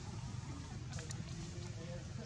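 Faint, indistinct voices over a steady low hum, with a few light clicks.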